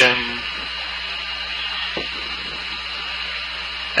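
Steady hiss with a low hum: background noise of the altitude chamber's open headset/intercom line between transmissions. There is one faint click about two seconds in.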